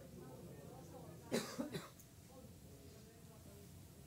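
A person coughs twice in quick succession, a little over a second in, against faint low talk.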